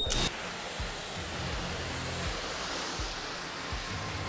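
Self-service car wash pressure-washer lance spraying high-pressure rinse water onto a car body to wash off foam, a steady hiss.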